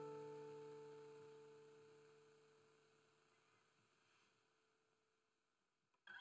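The final strummed chord of an acoustic guitar ringing out and fading away to nothing over about three seconds.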